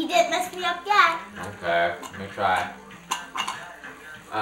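Voices, a child's among them, without clear words, with a few light clicks of plastic magnetic letters being moved on a magnetic board about three seconds in.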